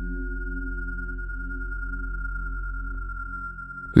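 Dark ambient synth drone: low sustained tones under one thin, steady high tone, easing down slightly just before the end.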